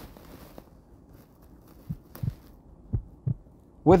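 Heart sounds heard through a stethoscope's bell at the mitral area: two lub-dub beats about a second apart, each a low thud followed about a third of a second later by a second one. These are normal, preserved first and second heart sounds (S1 and S2).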